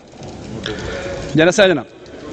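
A man's voice on a microphone: one drawn-out word with a wavering pitch about a second and a half in, over steady low background noise.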